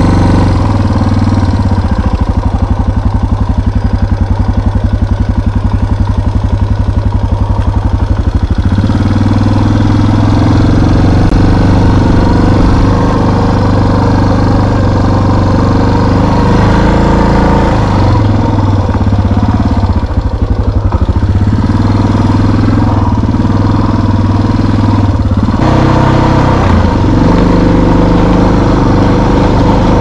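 Engine of a small off-road motor vehicle running while riding a trail: a low, pulsing note at first, stepping up in pitch about nine seconds in, then rising and falling with the throttle.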